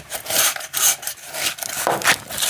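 Rubber-gloved hands crushing and rubbing a dark, crumbly granular material against the inside of a stainless steel pot: an irregular run of crunching and gritty scraping strokes, with a louder stroke near the end.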